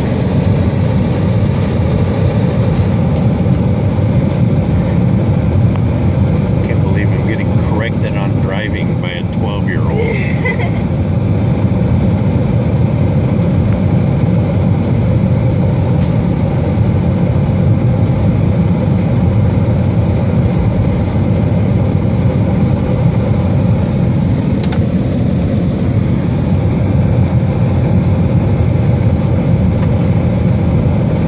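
Steady low road and engine noise of a Jeep driving along a paved road, heard from inside the cabin.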